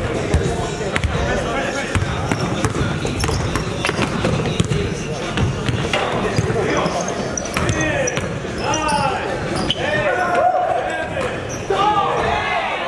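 A basketball bouncing on a hardwood gym floor in a pickup game, many short thuds, mixed with players' voices calling out across the gym.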